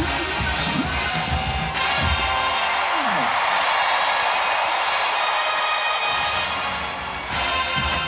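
HBCU show-style marching band playing brass and drums, breaking off a few seconds in on a falling note. A stadium crowd cheers through the gap, and the band comes back in near the end.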